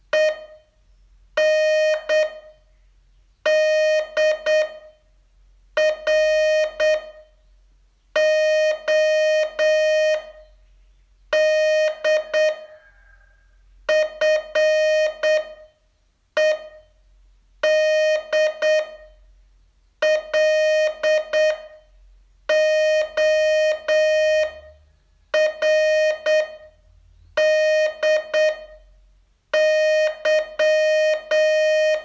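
Morse code practice sent as a steady mid-pitched beep tone, keyed on and off in dots and dashes. Each character comes as a short group, with a pause of about a second before the next, the slow, widely spaced sending used for learning to copy code by ear.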